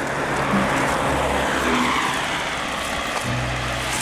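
A car passing by on the road, its tyre and engine noise swelling about half a second in and fading near the end, heard over background music.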